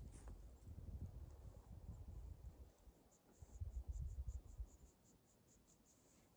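Faint insect chirping: a regular run of short high ticks, about four a second, clearest in the second half. Low rumbling on the microphone is heard under it, loudest a little past the middle.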